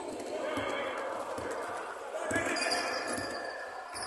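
Basketball game sounds on a hardwood court: irregular thuds of a ball and footsteps on the wooden floor, under faint voices of players across the hall.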